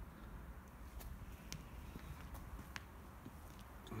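Quiet background with a faint low rumble and a few light clicks.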